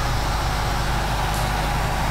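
Steady background noise with a low, even hum, picked up by an open public-address microphone while no one is speaking.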